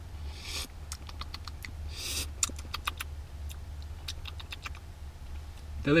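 A person eating chicken noodle soup from a spoon: two short slurps, about half a second and two seconds in, with a run of small clicks between and after them, over a low steady hum.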